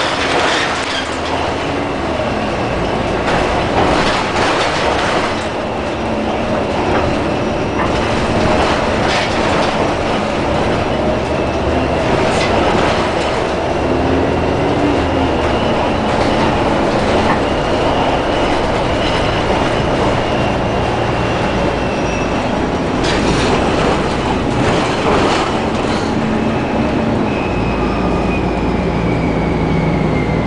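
Cabin sound of an Orion VII Next Generation diesel-electric hybrid city bus under way: steady drive and road noise with a faint high whine that slowly rises and falls as the bus speeds up and slows. Occasional short rattles and knocks from the body and fittings over bumps.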